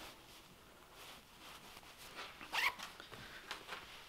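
A zipper on a Sitka Fanatic fleece hunting bib being worked: one short rasp with a rising pitch about two and a half seconds in, amid faint handling of the fabric.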